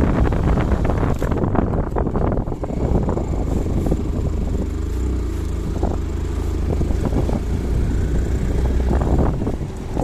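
Motorcycle riding along a road: wind buffeting the microphone over the engine and tyre noise. The rush is strongest for the first couple of seconds, then eases to a steadier rumble.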